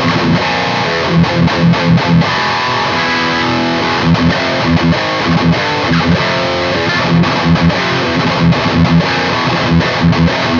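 High-gain distorted electric guitar from an ESP LTD, played through a Lichtlaerm King in Yellow overdrive pedal on its more aggressive voicing into a Diezel Hagen amp on channel 3. The riff goes in quick groups of short, heavy low chugs between held chords.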